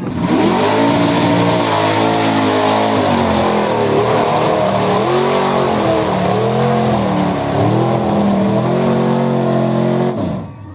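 Mud-bog pickup truck's engine revving hard as it churns through a deep mud pit, its pitch swinging up and down in repeated surges as the throttle is worked, over a loud rushing noise.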